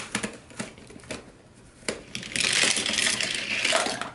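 Hot Wheels car and plastic playset track: a few sharp plastic clicks as the car is released from the top of the track, then a loud rushing noise lasting nearly two seconds as the car runs down into the cold-water tank.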